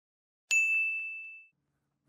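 A single bright bell ding that starts sharply about half a second in and rings out, fading away over about a second.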